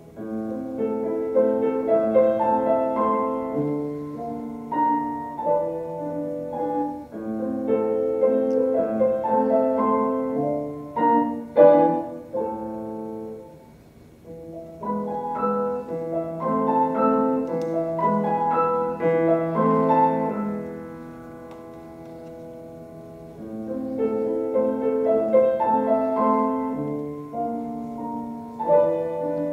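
Steinway grand piano played solo, a classical piece in phrases. The playing comes in right at the start, falls away briefly about halfway through, and goes soft for a couple of seconds near the end before building again.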